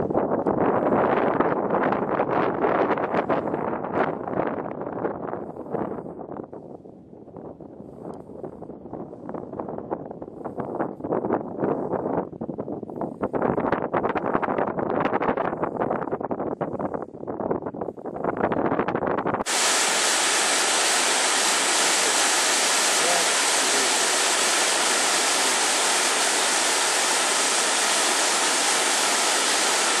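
Wind buffeting the microphone in uneven gusts for about the first twenty seconds. Then an abrupt cut to the steady rushing of a waterfall.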